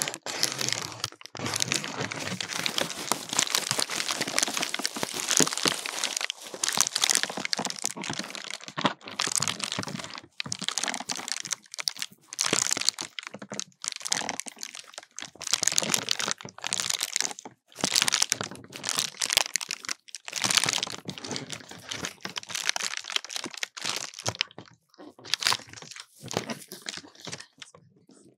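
A paper lantern and a tinsel garland being rubbed and crinkled right against a binaural microphone, making dense, irregular crackling and rustling in stretches with short pauses.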